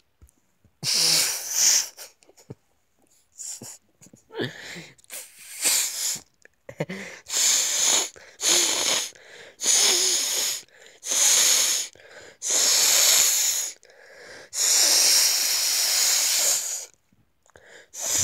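A person's wheezing, hissy bursts of breath, about a dozen of them, the later ones longer, the last lasting about two seconds.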